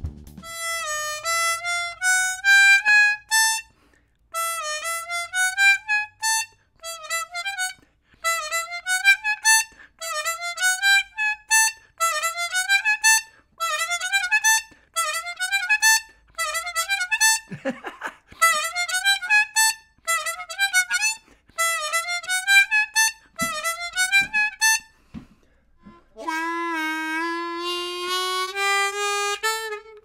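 Diatonic harmonica in G, a Hohner Marine Band played in third position, running a short rising lick with draw bends and overblows over and over, about a second a time with short gaps, as it is being learned. From about 26 seconds in, the same lick moves down an octave to the lower holes and is played more continuously.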